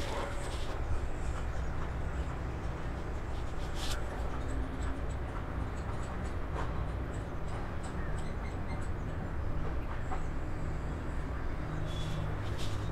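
A steady low hum of background noise, with faint light ticks scattered through the middle of it.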